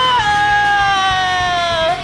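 A man's voice holding one long, high sung yell. It drops a step in pitch a moment in, sinks slowly lower, and stops abruptly just before the end.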